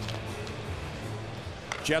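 Hockey arena ambience at a faceoff: steady crowd noise with music playing over it, and a commentator's voice coming in near the end.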